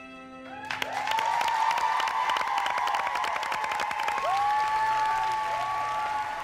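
Soft, slow music holding its last notes, cut off about half a second in. An audience then bursts into loud applause with whooping cheers.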